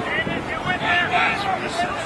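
Several people shouting and calling out on and around a rugby pitch, high-pitched overlapping voices as play runs.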